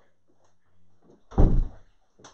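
A single dull, heavy thump about a second and a half in, short and deep, over a faint low hum.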